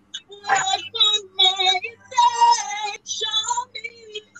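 A woman singing a gospel song solo, in held, bending sung phrases broken by short breaths, with a faint steady hum underneath.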